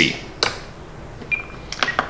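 Spektrum DX9 radio transmitter being operated through its menus: a sharp button click about half a second in, a short high single-tone beep a little past halfway, then a couple more clicks near the end.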